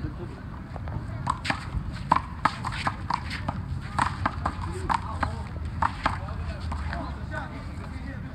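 One-wall handball rally: quick, irregular sharp slaps of the small rubber ball struck by hand and hitting the wall and concrete court, with sneaker scuffs, from about a second in until about six seconds in. Under them runs a steady low city rumble.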